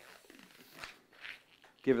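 A long latex twisting balloon being flexed and worked in the hands, its skin rubbing against the palms in a few soft strokes, to make it pliable before twisting.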